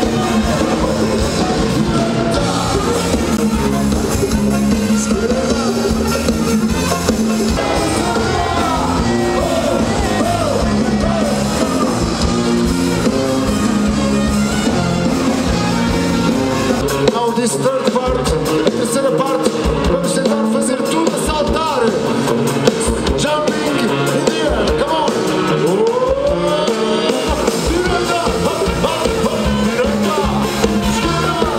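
Live band with a horn section of saxophones and a tuba playing a song with a lead singer. The deep bass and drums mostly drop out for about ten seconds midway and come back near the end.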